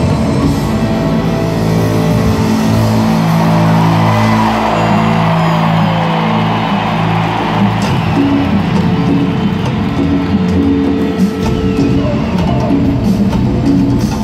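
Live Latin rock band playing in a stadium, with electric guitar over a drum kit, heard from the stands. A long note slides down in pitch a few seconds in.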